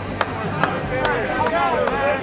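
Sharp, evenly spaced clicks, about two to three a second, over people's voices.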